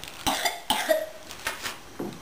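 A person coughing, a few short coughs in the first second, then quieter room sound.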